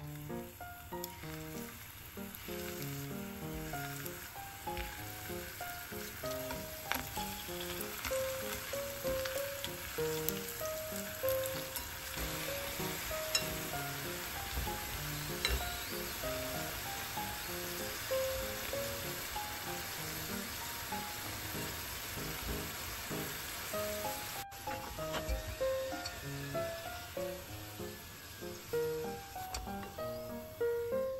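Sesame-coated dumplings (goma dango) shallow-frying in hot oil, a steady sizzle, under soft background music of short melodic notes.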